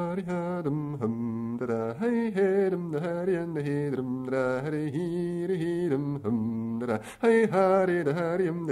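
A man singing a bagpipe march unaccompanied as mouth music, on wordless vocables that mimic the pipes. The tune moves in short, stepped notes.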